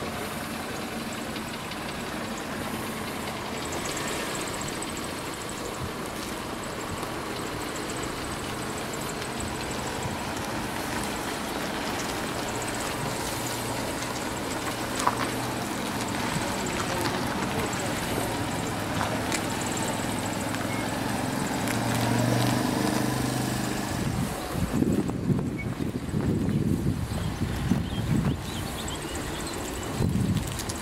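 Renault Clio learner car's engine running at low revs as the car creeps through a cone course, its note swelling briefly about three-quarters of the way in. Gusts of wind buffet the microphone near the end.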